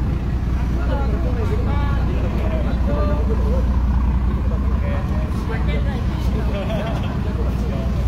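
A boat's engine running with a steady low rumble, with people's voices talking over it.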